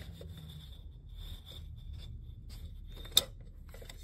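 Faint rubbing and scraping handling noise as a hand and the phone move about in the wheel well, with one sharp click a little after three seconds in.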